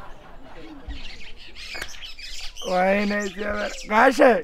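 Loud wordless vocal calls: a pitched call held in two parts about three seconds in, then a call that falls in pitch at the very end, over faint earlier chirps.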